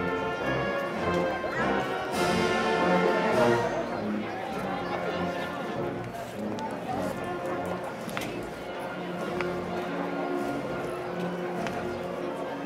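A Spanish processional wind band (banda de música) playing a slow palio march, with sustained brass and woodwind chords over drums. It swells loudly about two seconds in.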